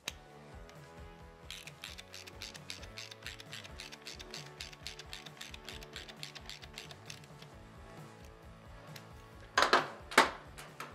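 Hand socket ratchet clicking rapidly as it runs in the cam sprocket bolt on a Harley cam chest, with the pawl ratcheting on each back-stroke. A couple of louder knocks come near the end.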